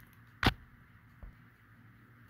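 A single sharp click of a plastic-packaged diecast model being set down on a display stack, then a faint low thump, over quiet room tone.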